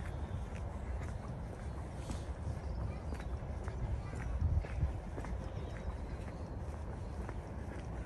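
A walker's footsteps on a paved path, light irregular steps over a steady low rumble.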